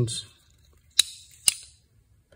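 Two sharp clicks about half a second apart, each followed by a brief scrape, as a digital caliper is handled and its jaws opened to measure a motor rotor.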